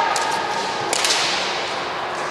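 Bamboo shinai clacking against each other in a few sharp knocks in kendo sparring, while a high, held kiai shout breaks off about a second in.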